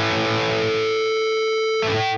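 Distorted electric guitar note held and sustained, with the AcouFiend plugin's generated feedback tone, set to the second harmonic, ringing steadily over it, like feedback from a real amp. Near the end the upper tones shift as the note changes.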